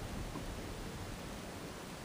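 Faint, steady background noise: an even hiss over a low rumble, with no distinct events.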